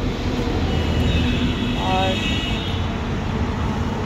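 Steady low outdoor background rumble, with a faint high-pitched sound over part of it and a brief pitched call about two seconds in.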